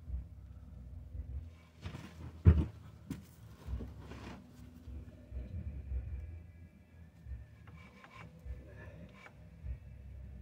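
Hand work on a truck's front axle and hub: scraping and rubbing of parts, a sharp knock about two and a half seconds in (the loudest sound), and light bumps throughout.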